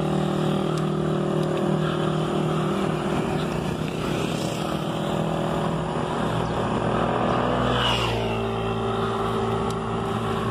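Small motorcycle engines passing on the road: the nearer one's drone fades away over the first few seconds, and about eight seconds in another vehicle goes by with its pitch dropping as it passes. A steady rush of wind and road noise runs underneath.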